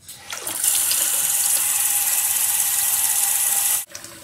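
Water gushing into a bathtub: a strong, steady rush that builds up over the first half-second and cuts off suddenly near the end.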